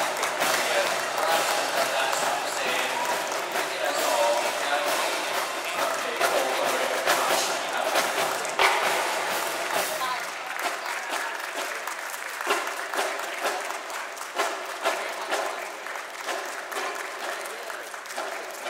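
Audience applauding in a large reverberant hall, with some voices mixed in; the clapping is strongest for the first ten seconds or so, then thins out and grows quieter.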